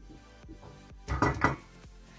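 Aluminium pot knocking and clattering against the metal pan and stove grate beneath it as it is settled on the gas hob: a short cluster of sharp metal knocks a little over a second in, over background music.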